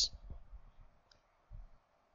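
A faint click about a second in, then soft low thumps half a second later, from the pointing device of the computer on which the slide is being annotated.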